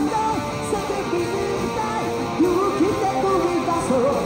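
Electric guitar played live through a small amplifier, a melody line with bent, sliding notes over rock accompaniment.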